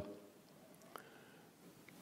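Near silence: room tone, with one faint click about halfway through.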